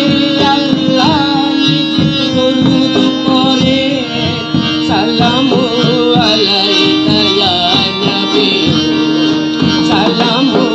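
Live band playing a qawwali tune: a harmonium holds sustained reedy chords under steady drum-kit and hand-percussion beats. A voice sings wavering, ornamented lines, most clearly in the second half.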